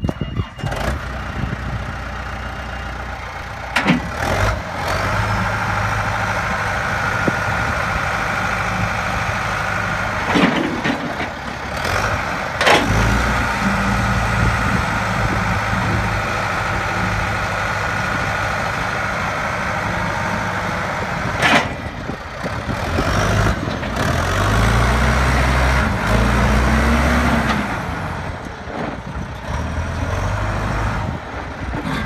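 John Deere 210LE skip loader's engine running under load as the loader bucket is raised and the machine is driven, with a steady higher whine over it. A few sharp clunks come through, and about three-quarters of the way in the engine revs up and drops back.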